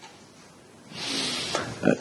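A short breathy huff from a person about a second in, lasting under a second, followed by a man's hesitant 'euh'.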